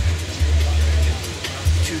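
Background music with a deep bass line, the bass notes starting and stopping, and faint voices beneath it.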